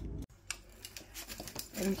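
An air fryer running with a low fan hum and a rush of air, cut off abruptly a quarter-second in. After that come a few faint clicks and handling sounds.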